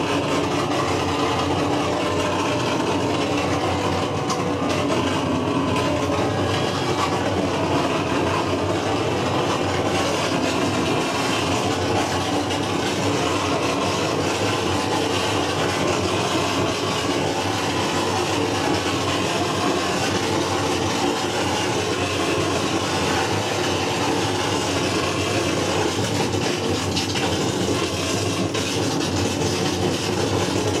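Live noise music made with a chain of effects pedals and a small mixer: a loud, steady wall of dense noise, unbroken throughout.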